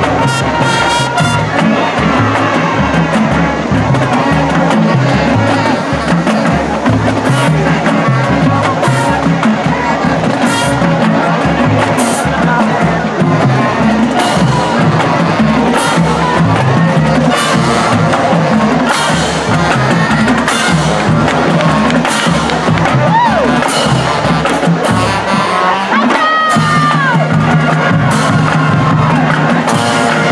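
High school marching band playing: brass chords, sousaphones included, over drum hits. About 26 seconds in, the low notes break off briefly and a new held chord begins.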